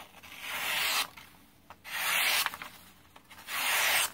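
A plain-edge Mercer Culinary Genesis steak knife slicing through a held sheet of copier paper three times, each cut a short hiss under a second long. The factory edge cuts through cleanly: quite sharp.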